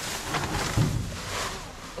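Plastic bags and bubble wrap rustling and crinkling as they are shifted in a dumpster, with a dull thump about a second in.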